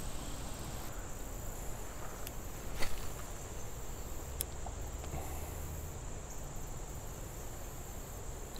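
Insects trilling steadily at a high pitch over a faint outdoor hiss, with a couple of light clicks a few seconds in.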